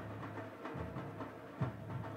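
Faint, steady stadium ambience under the broadcast, with a low hum and no distinct events.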